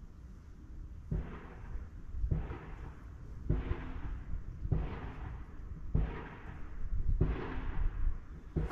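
Water slapping against the hull of a bass boat, six times at an even spacing of a little over a second: each is a low thump with a short splashy wash that fades.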